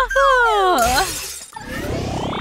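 A woman's long, exasperated sigh, voiced and falling in pitch. About a second and a half in, a rising whoosh sound effect starts as a scene transition.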